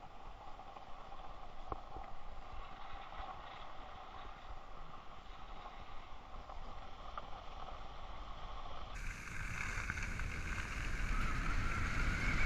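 Skis sliding over groomed snow with wind rushing on the microphone of a skier's body-worn camera, a steady hiss; about nine seconds in it becomes suddenly louder and higher.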